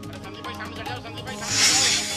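News-programme background music with a steady beat, then a loud hissing whoosh near the end, a transition sound effect between news items.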